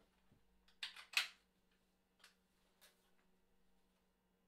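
Faint steady electrical hum from an idling bass amp rig. About a second in come two quick scuffs of handling noise, then two softer clicks; no bass notes are played.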